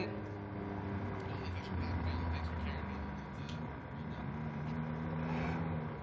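Trackside ambience: a low, steady mechanical hum that shifts in pitch a couple of times, with faint distant voices.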